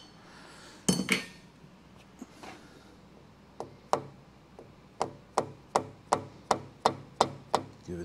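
Light, evenly spaced hammer taps on the cast-iron base of a dividing-head tailstock, about eleven strikes at roughly three a second over the second half, nudging it sideways to correct a few thousandths of misalignment. About a second in, a couple of sharper metal clicks come from a wrench on its loosened hold-down bolts.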